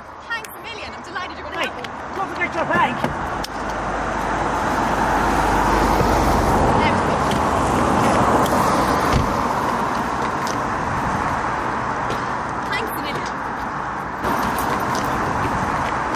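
Road traffic on a wet road: tyre hiss and a low engine rumble swell from about three seconds in, are loudest in the middle, then hold steady and rise again near the end. A few short bursts of voice come in the first seconds.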